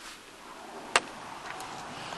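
A single sharp click about a second in, the loudest thing here, followed by two fainter clicks, over a rising hiss of background noise inside a car's cabin.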